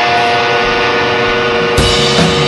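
Live rock band opening a song: a loud chord comes in sharply and is held with steady ringing notes, then about three-quarters of the way through a drum hit brings in the full band.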